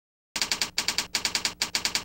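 Typing sound effect: a rapid, even run of key clicks, about eight a second, starting about a third of a second in.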